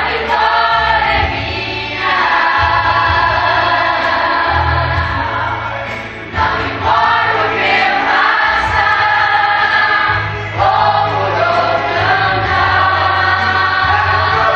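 Live gospel song: a male singer's voice on a microphone through the PA speaker, with instrumental backing and voices singing along. The sung lines come in phrases of a few seconds, with short breaths about 2, 6 and 10 seconds in.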